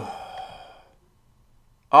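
A man's breathy sigh trailing off the end of a word and fading within about half a second, then a pause of over a second before he speaks again near the end.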